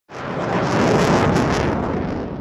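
Intro sound effect for a logo card: a loud, steady rushing noise that swells in at once and begins to fade near the end.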